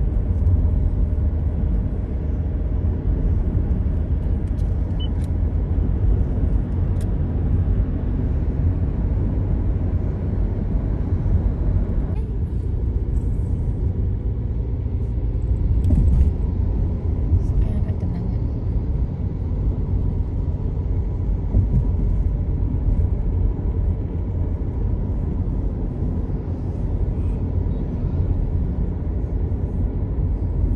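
Steady low rumble of a car driving along the road, heard from inside the cabin: tyre and engine noise. About twelve seconds in, the higher hiss drops away and the rumble carries on.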